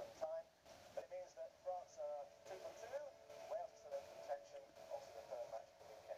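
Faint, tinny speech from a television's speakers, too quiet to make out the words.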